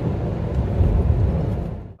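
Car cabin noise at highway speed on a wet road: a steady low rumble with tyre hiss, fading out near the end.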